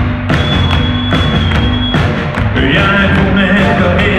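Live rock band playing a song loudly, with drums keeping a steady beat under keyboard and guitars. A high held note sounds through the first half, and singing comes in about halfway.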